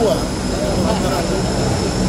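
Steady aircraft engine drone with a thin, constant high whine, under voices.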